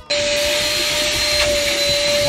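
Vacuum cleaner running steadily, sucking through a hose nozzle pushed into the crevice of a fabric sofa: a rushing airflow with a steady whine over it. It cuts in suddenly at the start.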